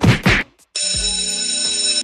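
The last two of a run of quick rhythmic thumps, then a mobile phone ringtone: a steady, buzzy electronic tone starting about three-quarters of a second in and cutting off suddenly at the end.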